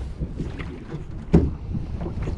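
Wind rumbling on the microphone in a small aluminium rowboat, with light knocks and clatter of gear on the metal hull and one sharper knock a little past halfway.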